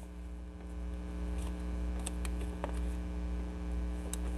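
Steady electrical mains hum, with a few faint clicks in the second half.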